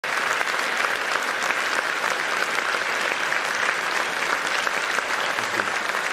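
A large hall audience applauding steadily: a dense, even patter of many hands clapping.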